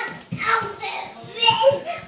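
Children talking and chattering, the words indistinct.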